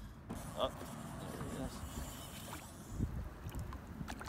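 Faint open-air ambience on a small fishing boat: a low wash of wind and water noise. There is a short pitched blip about half a second in and a soft knock about three seconds in.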